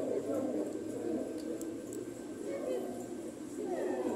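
Low bird cooing, with people's voices in the background.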